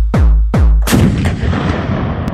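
Electronic intro music: deep bass hits that fall in pitch, about two and a half a second, then a loud boom about a second in with a long fading tail.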